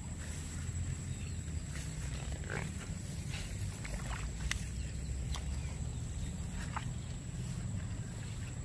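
Open-field outdoor ambience: a steady low rumble, a thin, steady high-pitched tone, and a few faint, short chirps scattered through.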